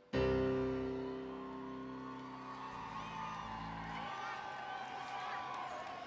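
The song's final chord, struck once on a Roland RD-700 stage piano and left to ring, fading over about four seconds. Crowd cheering and whistles rise faintly as it dies away.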